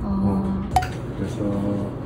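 A single short, bright clink of something hard, ringing briefly, about three-quarters of a second in, over a steady low tone that stops and starts again.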